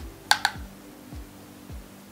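Two sharp clicks in quick succession about a third of a second in, over quiet background music with a steady low beat.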